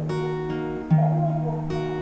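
Acoustic guitar strumming a B minor chord and letting it ring, with a second strum of the chord about a second in.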